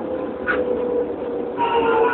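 Electric train's motors whining steadily, the pitch slowly falling. A second, higher whine joins it near the end, with a brief squeak about half a second in.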